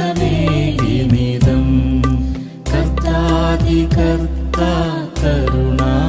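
Malayalam Christian worship song: a voice singing a wavering melody over steady low sustained accompaniment, with short breaks between phrases about two and a half and five seconds in.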